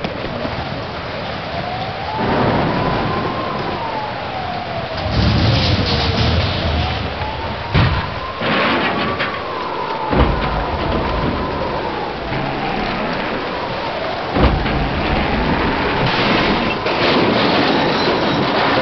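Hurricane-force wind and heavy rain, with a howling tone that slowly rises and falls every few seconds and several sudden bangs in the middle.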